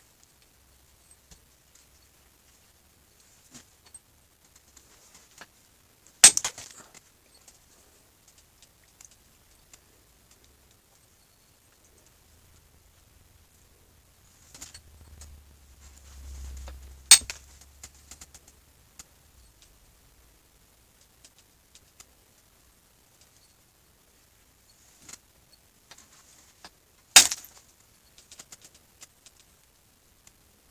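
Keokuk chert preform being pressure flaked with a copper-tipped flaker: three sharp snaps about ten seconds apart as flakes pop off the edge. Faint scratching and handling noise come between the snaps.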